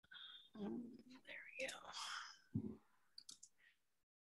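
Soft, half-whispered speech over a video-call link, a few muttered words, with a few faint clicks near the end.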